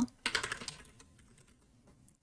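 A short, quick run of keystrokes on a computer keyboard as an email address is typed, stopping before the end of the first second.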